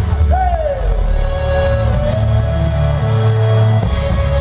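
Live R&B band playing, with one singer holding a long note over the bass and drums; the note slides down at first, then holds steady until just before the end.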